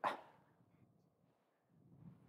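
The clipped end of a man's excited exclaimed "yeah" in the first instant, then near silence with only a faint hiss.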